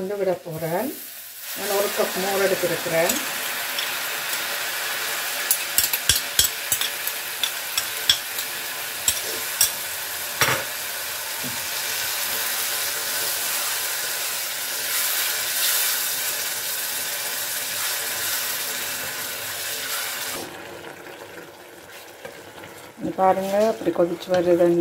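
Onion flower stalks frying in a hot non-stick pot, sizzling steadily as spoonfuls of curd go in, with a run of sharp spoon clicks against the bowl and pot a few seconds in. The sizzle drops away about four seconds before the end.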